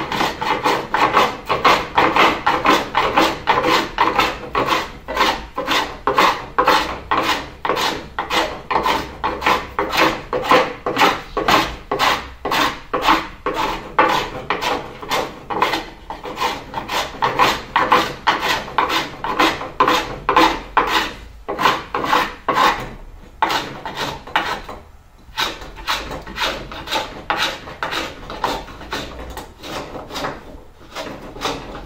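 Small metal No. 92 rabbet plane shaving wood in short, quick strokes, about two a second, fairing strip planking into the corner by the rabbet. There are a couple of brief pauses in the last third.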